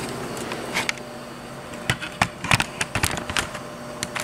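A string of light, irregular knocks and clicks from handling the unit and the camera, over a faint steady hum.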